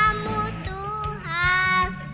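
A young boy singing into a microphone over a backing track, with a long held note in the second half.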